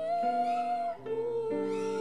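A woman singing a slow hymn to piano accompaniment: one long sung note for about a second, then a lower held note, over sustained piano chords.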